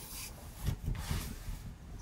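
Fabric rustling as a T-shirt is pulled off over the head, with a few soft low bumps.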